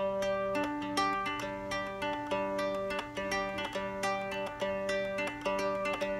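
Three-string cigar box guitar (a kit-built Hobo Fiddle in 1-5-1 tuning) picked fingerstyle, repeating a low-high-middle string pattern with a syncopated rhythm. The same few notes are plucked in a steady stream and ring over one another.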